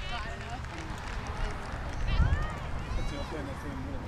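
Distant shouts and calls of players and spectators across an open soccer field, with no clear words, over a steady low rumble.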